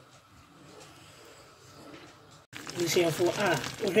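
Faint stirring of a pan of melted butter and milk with a wooden spoon. About two and a half seconds in, an abrupt cut leads to louder speech over the pan.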